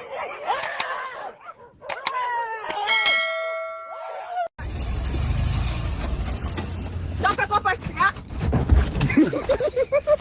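A small dog whining and growling as it bites at a sneaker, then a bell-like ding that rings out and fades over about a second and a half. After a sudden cut comes low rumbling outdoor noise with brief voices.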